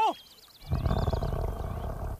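A low, rough growl for about a second and a half, starting about half a second in. A faint high warbling trill runs over the start.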